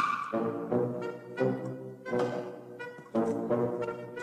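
Brass-led music playing phrases of sustained notes, with a crash at the very start.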